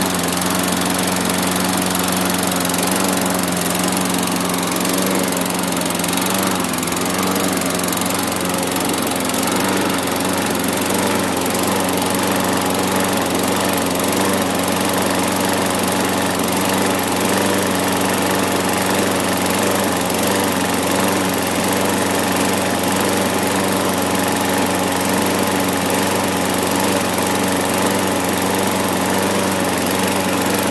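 Briggs & Stratton 5 HP single-cylinder four-stroke engine on a Poulan push mower running on its own after a cold start. Its speed wavers a little in the first several seconds and then settles to a steady run, a sign that the water has been cleared from the fuel.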